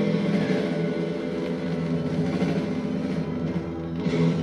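Live rock band playing an instrumental passage of held, ringing chords on electric guitar, bass and drums, with no vocal line. It is heard as played through a television's speaker and picked up in the room.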